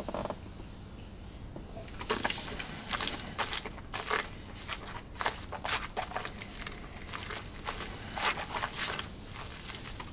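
Mouth sounds of a taster working a sip of spirit around his mouth: a string of short, irregular wet clicks and smacks, a few a second.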